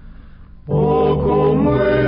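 Earlier music trails off quietly. About two-thirds of a second in, a sung hymn starts abruptly, with several voices singing together over low sustained accompaniment.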